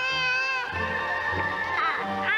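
A baby's drawn-out, meow-like babbling cry in the first moment, over music with long held notes.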